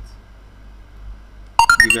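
Computer alert chime, a quick run of short notes stepping upward in pitch, sounding suddenly near the end. It is the prompt of a download manager's captcha dialog popping up and waiting for the captcha to be typed in.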